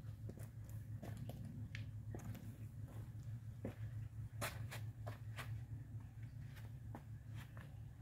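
Footsteps on rubber floor mats and cedar wood chips: scattered light clicks and crunches over a steady low hum.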